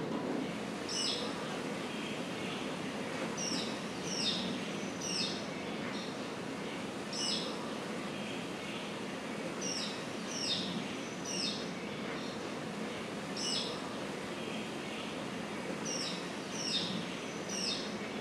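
Bird calls: short downward-slurred chirps, singly or in quick runs of two or three, repeating every few seconds over a steady outdoor hiss. This is ambient sound on a film soundtrack, played back through room speakers.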